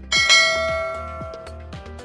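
A bell-chime sound effect for the subscribe overlay's notification bell strikes once just after the start and rings out, fading over about a second and a half. Background music with a steady beat plays under it.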